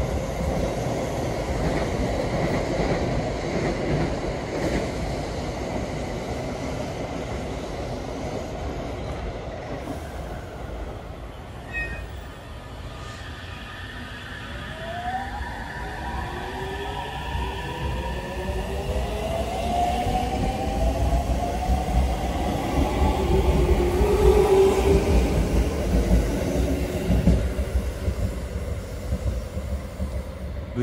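Electric local train pulling out of a station: the whine of its traction motors rises in pitch as it speeds up, and the rumble of the cars grows loudest as they pass close by, about three quarters of the way through.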